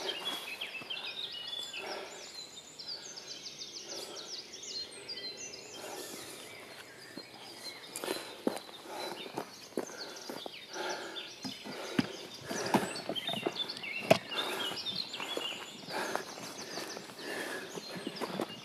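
Small birds singing in a forest, a run of short high chirps repeated again and again, with footsteps and rustling on the forest floor and a few knocks in the second half.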